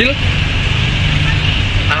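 A steady low background rumble with a constant hiss, with a short spoken word at the start.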